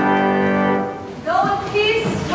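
Church organ holding a steady final chord that cuts off about a second in, at the end of a hymn; a person's voice starts shortly after.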